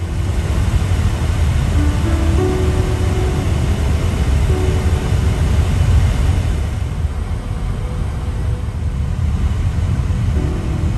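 Steady low road rumble of a car, heard from inside the cabin while driving.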